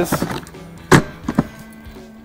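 Latches on a Harley-Davidson touring bike's hard luggage being worked by hand: a few light clicks, a sharp clack about a second in, then two softer clicks, over background music.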